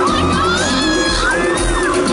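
Concert crowd of fans screaming and cheering over a loud pop dance track, with high shrieks rising and falling above a steady bass beat.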